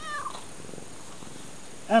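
Tortoiseshell cat meowing short, nasal 'an' calls while fawning for attention and being petted: a faint falling call at the start and a loud one near the end.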